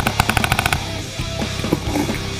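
Paintball marker (a Proto Matrix PM5) firing a fast string of about ten shots in under a second, over rock music.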